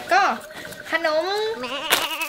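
A girl's high, sing-song voice speaking, with the pitch swooping up and down and wavering quickly near the end.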